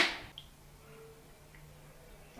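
Near silence: faint room tone as a woman's voice trails off, with one tiny click about half a second in.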